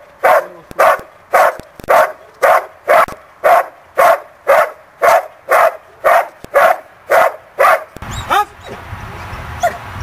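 A dog barking steadily and rhythmically, about two barks a second, at a helper standing in a hiding blind: the bark-and-hold of protection training. The barking stops about eight seconds in.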